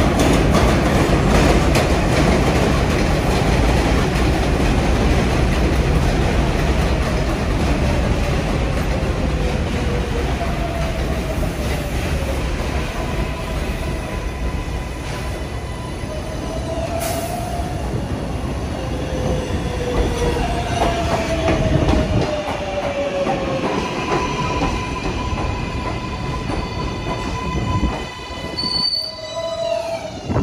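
NYC subway R142A train arriving on an elevated steel line, with heavy rumble and rattle of the wheels on the structure. Its motors whine, falling in pitch in several short steps as it brakes, with a thin high wheel squeal. Near the end it goes quieter and a short electronic chime sounds.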